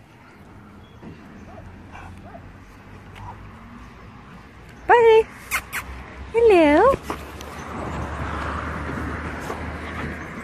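Podenco Orito dog giving two loud, high-pitched yelping barks: a short one about five seconds in, falling in pitch, then a longer one with a wavering, dipping pitch a second and a half later.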